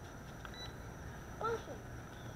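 Faint steady background with one short, high-pitched beep about half a second in.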